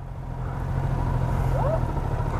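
Sport motorcycle engine idling, a steady low rumble that grows slowly louder.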